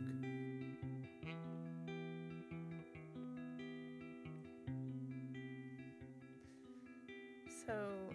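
Acoustic guitar playing a slow line of plucked notes that ring on over held low bass notes.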